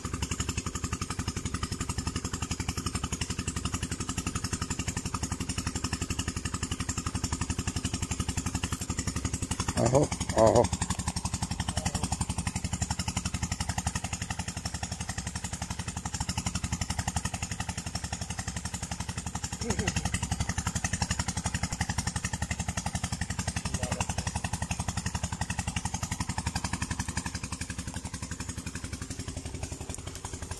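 A small engine runs steadily in the background, a continuous pulsing drone. Two short, louder bursts come about ten seconds in.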